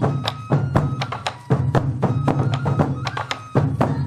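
Sansa odori festival drumming: sansa taiko drums struck in a steady, fast rhythm of about four beats a second, with a steady flute-like melody line sounding over the drums.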